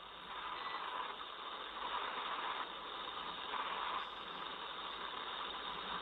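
Steady hiss of an open radio communications channel, band-limited like a comms feed, swelling and dipping slightly in level a few times.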